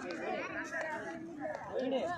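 Indistinct chatter of several voices talking over one another, with no clear words.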